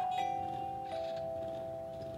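Background music score: a few held notes sounding together, with one note changing to another about a second in.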